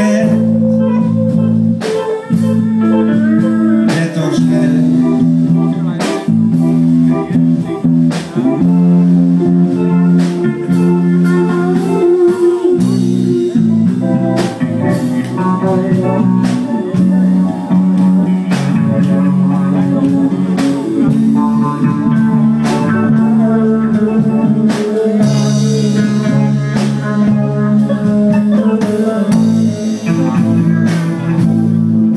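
Live band playing amplified music throughout: electric guitar, bass guitar, drum kit and keyboard.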